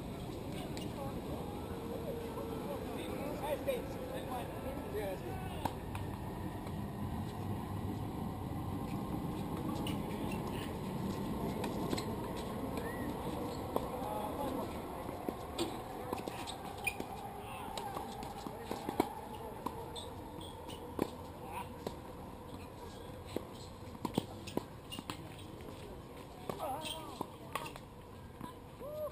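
Tennis balls struck by rackets in doubles play: sharp pops at irregular intervals, more frequent in the second half, over a steady outdoor background and distant voices.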